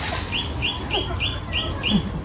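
A bird chirping: a quick run of six short, identical high notes, about four a second, starting about half a second in.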